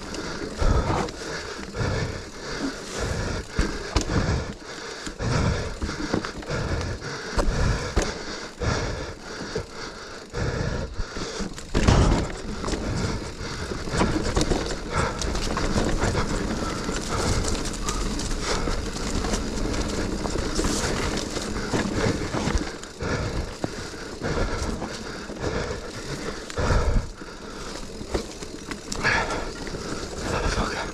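Mountain bike running fast down a rough woodland dirt trail: continuous tyre rumble on dirt and roots, with frequent knocks and rattles from the bike over bumps. The loudest hit comes about twelve seconds in.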